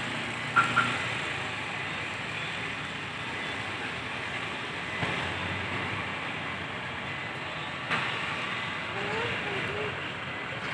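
A bus engine running as the coach creeps slowly forward across the terminal yard, over steady background noise and distant voices. Two short high beeps come close together about half a second in, and there are a couple of single knocks later.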